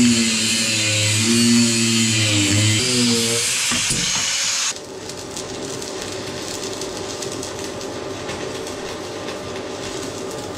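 Angle grinder cutting a steel pin held in a vice, its pitch wavering under load. About five seconds in it gives way abruptly to the steady crackling hiss of a stick-welding arc from a Jefferson 160A inverter welder, welding a washer onto the end of the pin.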